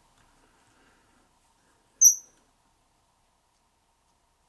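Fly-tying scissors snipping through a rabbit-fur strip: a single short, high-pitched squeak from the blades about two seconds in.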